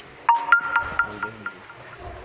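A short electronic tone pattern: a lower steady tone joined by a higher one, pulsing about four times a second and fading out about a second and a half in.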